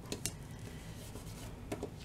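Fingers handling and pressing a paper sticker onto a planner page: a few faint light clicks and taps, once near the start and again near the end, over a low steady room hum.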